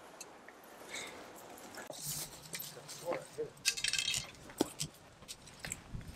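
Faint, scattered talk from people some way off, with a few light clicks and knocks between the words.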